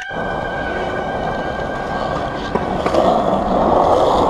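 Skateboard wheels rolling over concrete, a steady rumble picked up close to the board, getting louder in the last second.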